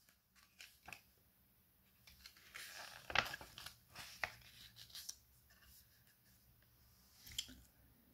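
Faint scattered clicks with a short rustle about three seconds in, between stretches of near quiet: small handling noises close to the microphone.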